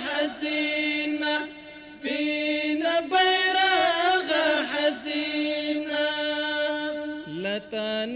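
Men singing a Pashto chant (tarana) in unison into a microphone, with no instruments. The phrases hold long notes with ornamented glides between them, and there is a short breath-pause about a couple of seconds in.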